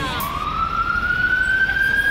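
Police siren wailing, its pitch rising over the first second and a half and then holding steady.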